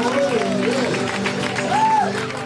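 Live band music: a man singing with guitar accompaniment, holding and bending sung notes, over crowd noise.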